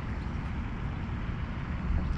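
Steady, uneven low rumble of wind buffeting the microphone, with a faint outdoor hiss behind it.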